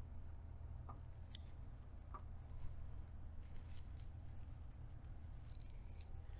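Faint, scattered small clicks from the DIP switches on an EG4 LifePower4 battery module being flicked by hand, over a steady low hum.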